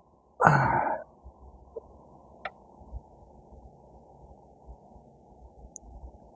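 A person's short exhale or sigh, about half a second long, near the start. After it comes a quiet stretch with a few faint clicks, the sharpest about two and a half seconds in.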